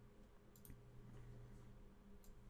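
Faint computer mouse clicks, a quick pair about half a second in and a lighter one just after, over a low steady hum.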